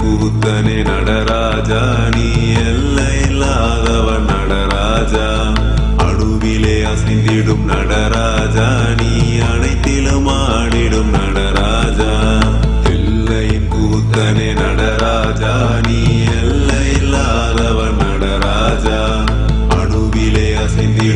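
Hindu devotional music: a chanted mantra sung over instruments with a deep bass, going on steadily.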